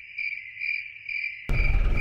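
An insect singing a steady, pulsing trill at one high pitch, cricket-like. About one and a half seconds in, a loud low rumble of background noise cuts back in abruptly.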